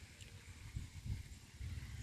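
Faint wind buffeting the phone's microphone: a low, irregular rumble.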